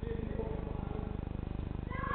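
Faint, indistinct calling voices over a steady low hum with an even pulse.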